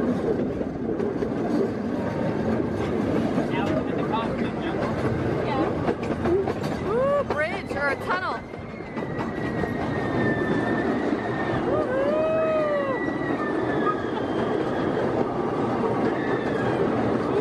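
Small open-carriage ride train rumbling and clattering along its track, with a thin, slowly falling wheel squeal from about halfway through.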